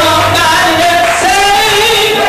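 A woman singing with sustained, wavering notes through a microphone and church sound system, with band accompaniment underneath.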